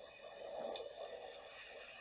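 Steady, faint hiss between spoken lines, with one faint tick about three quarters of a second in.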